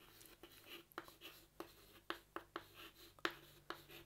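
Chalk writing on a chalkboard: faint, irregular taps and scratches as a word is written.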